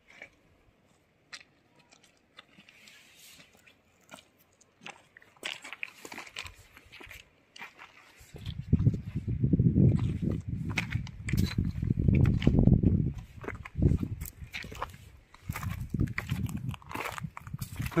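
Footsteps crunching on loose river pebbles, with scattered sharp clicks of stone on stone. From about eight seconds in, a loud, uneven low rumble comes and goes over them in gusts.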